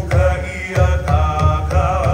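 Live Polynesian music for a hula performance: voices singing in a chant-like melody over a steady low drum beat, with strummed guitar.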